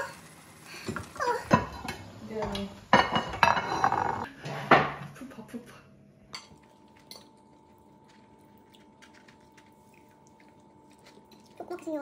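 Wooden spatula stirring and scraping pasta in a frying pan, with clatter and clinks against the pan and voices over it. About six seconds in the clatter stops, leaving a quiet room with a faint steady hum.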